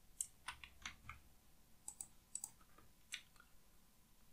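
Faint computer keyboard and mouse clicks, about ten scattered through the few seconds, several in quick pairs.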